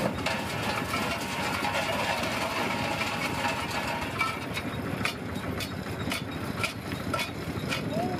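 Vintage stone crusher at work, stones cracking and rattling through it with frequent sharp knocks over a steady mechanical running noise.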